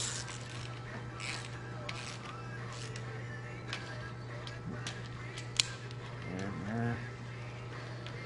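Hand ratchet clicking irregularly as the rocker shaft hold-down bolts on a Detroit Diesel Series 60 head are snugged down by hand, with one sharp metallic click a little past the middle. A steady low hum runs underneath.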